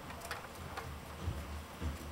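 A few faint, irregular ticks and taps over a low steady hum: a ferret's claws on hard plastic and cables as it scrambles off a box.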